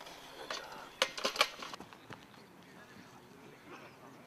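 A quick cluster of sharp knocks about a second in, with a fainter click just before it, then only low outdoor background.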